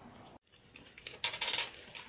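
Ballpoint pen writing on notebook paper: a short run of scratchy clicks about a second in.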